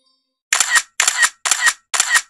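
A camera shutter sound effect repeating about twice a second, starting about half a second in.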